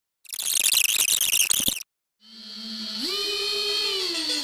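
Outro sound effect and music: a burst of hissing, crackling noise lasting about a second and a half, a brief gap, then music fading in on a sustained tone that slides up in pitch about three seconds in.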